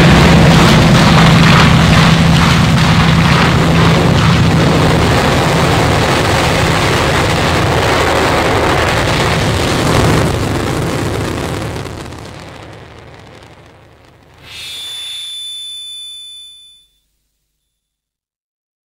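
The end of a space-rock track: a dense, distorted wall of guitar noise fades out. A short ringing tone with overtones follows about two-thirds of the way in and lasts a couple of seconds, then the music stops.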